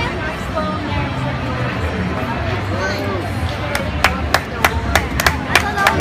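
A footbag struck again and again by a player's shoes: from about four seconds in, a quick run of sharp taps, about three a second, over steady crowd chatter.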